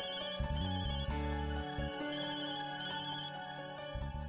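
Mobile phone ringtone sounding as an incoming call, a high warbling trill in two pairs of short bursts, over background score music.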